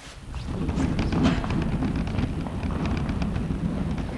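Camcorder handling noise: a heavy rumble with many irregular knocks and clicks as the camera is moved and carried about, with footsteps on a hard hall floor among the knocks.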